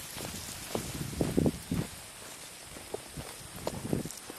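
Footsteps on a dirt trail, a series of soft thuds that grow fainter as the walker moves away, over a faint steady outdoor hiss.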